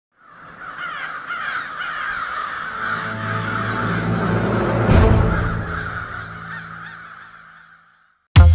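Many crows cawing over and over, layered over low sustained musical tones that swell up, with a deep booming hit about five seconds in; then it all fades out.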